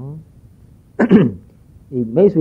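A man's voice: a short sound trailing off at the start, then a single throat-clearing about a second in, rough at the onset and falling in pitch.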